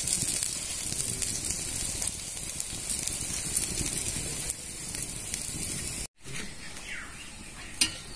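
Pumpkin-flower fritters sizzling as they shallow-fry in oil in a steel wok, a steady hiss. The sound drops out briefly about six seconds in, then goes on more quietly.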